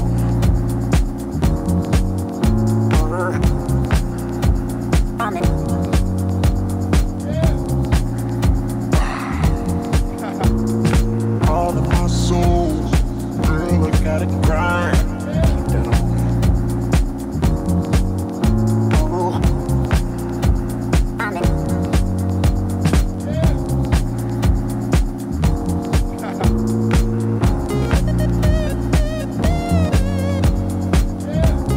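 Deep, jazzy house music played from vinyl: a steady kick drum about twice a second under a bass line and sustained chords.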